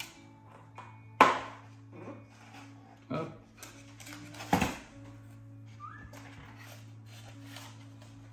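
Handling noises from fitting a plastic afterburner tube and its wiring into a foam model jet's fuselage: a sharp click about a second in and another knock a few seconds later. Soft sustained background music runs underneath.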